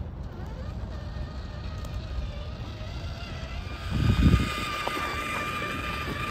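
Traxxas TRX-4 RC crawler's Hobbywing Fusion Pro brushless motor and geared drivetrain whining as it crawls, the whine growing louder in the second half. A steady low rumble runs underneath, with a brief low thump about four seconds in.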